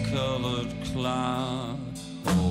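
A man singing a slow, drawn-out, chant-like line over a steady low drone and guitar, with the sound thinning out just before the end.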